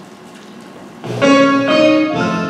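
Quiet room tone, then instrumental music with piano starts about a second in, with sustained notes and chords.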